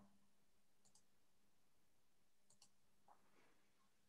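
Near silence: room tone, with a few faint, short clicks.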